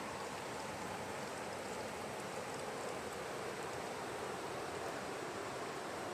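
Water trickling and dripping over mossy rocks at a river's edge: a steady, even rush of water.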